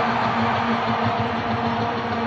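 A rock band's amplified electric instruments holding one steady low note over the dense noise of an arena crowd, heard from the audience.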